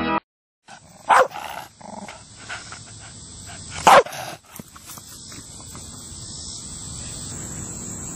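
A beagle barks twice, once about a second in and again about four seconds in, with a few smaller, fainter sounds between the barks.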